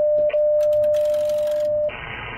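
ICOM IC-7300 transceiver keyed into tune mode, sending a steady beep for about two seconds while the MFJ-993B automatic antenna tuner's relays click rapidly as it searches for a match. The receiver hiss drops out while it transmits and comes back as the beep stops near the end.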